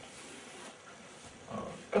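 Chalk drawing on a blackboard, heard faintly over room hiss. A short, slightly louder sound comes just before the end.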